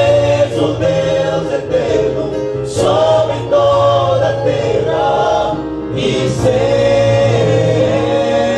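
Male vocal group singing a Portuguese gospel hymn in harmony into hand microphones, with held chords and short breaks between phrases.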